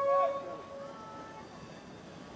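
A pitched tone starts suddenly and fades over about a second, followed by two fainter tones at other pitches, over low background noise.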